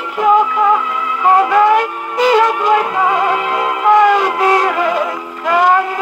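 A 1951 Italian 78 rpm shellac record of a moderate-tempo popular song with orchestra, played on a wind-up His Master's Voice portable gramophone. The sound comes through the acoustic soundbox and horn, so it is thin and has almost no bass.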